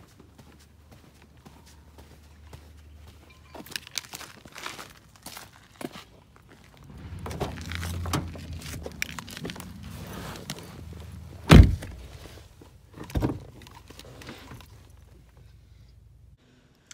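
Footsteps on pavement, then a car door being opened and slammed shut with one loud thud about two-thirds of the way through, followed by a lighter thunk shortly after.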